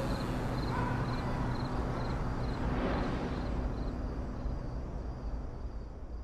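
Night-time outdoor ambience: crickets chirping in short high pulses about twice a second, over a steady low hum and rumble. It fades gradually toward the end.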